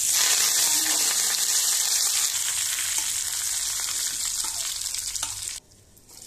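Tempering of mustard seeds, dried red chillies and curry leaves sizzling in hot coconut oil, with a few scattered pops. It cuts off suddenly near the end.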